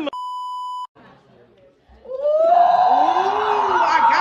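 A steady censor bleep over a swear word, cutting off abruptly under a second in. After a short quiet gap, a woman gives a long, rising "ooh" of surprise.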